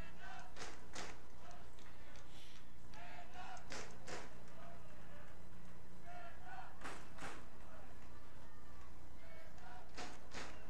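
Soccer match field sound: faint distant players' shouts and a few sharp knocks, mostly in pairs, over a steady low hum.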